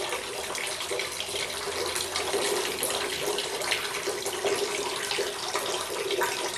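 Water running steadily out of a plastic bottle through three side tubes set at different heights, a continuous splashing flow.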